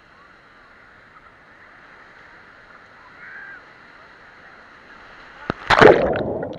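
Steady sea and surf noise at the water's surface, then near the end a sudden loud splash and gurgle as the camera is plunged underwater.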